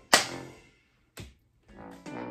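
The song's backing music ends on a final clap and chord that rings out and fades to near silence within about half a second. A single soft knock follows a little past the middle.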